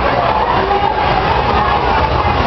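Steady, loud hubbub of a crowded hall, many voices blending into one continuous din.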